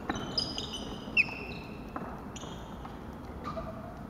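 Badminton rally on a wooden sports-hall floor: court shoes squeaking in short, high-pitched squeals, some sliding in pitch, and sharp racket hits on the shuttlecock, the loudest about a second in.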